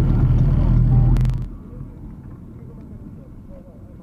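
Low vehicle rumble inside a moving car's cabin, loud for about the first second and a half, then dropping suddenly after a sharp click to a much quieter low hum.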